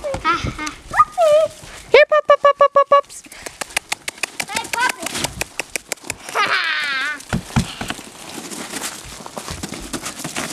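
Voices without words: a quick run of laughter about two seconds in, then light clicks and rustling, then a long wavering high cry that falls in pitch at about six and a half seconds.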